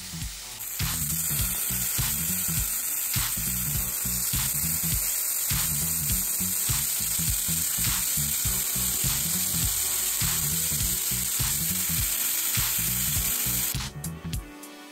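Marinated chicken thigh pieces searing in a splash of hot oil in a non-stick frying pan: a steady sizzle that starts about half a second in, the chicken left unmoved to caramelise. Background music with a steady beat plays underneath.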